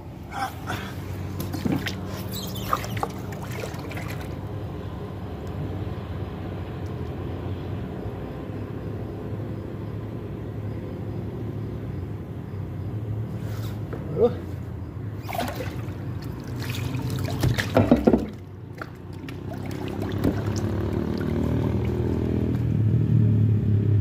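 Water splashing and sloshing as a car tyre on its steel wheel is dunked and turned in a water tank to find a puncture, with the loudest splashing a few seconds in and again around 15 to 18 seconds in. Under it runs a steady low mechanical hum that grows louder near the end.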